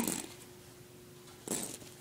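Mostly quiet handling of a fabric handbag, with one brief rustle about one and a half seconds in as a hand works at its zipper pull.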